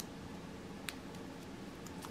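Faint handling of a small cut-open sachet of powder between the fingers: a few light ticks and crinkles, with one small click at the start and another a little under a second in.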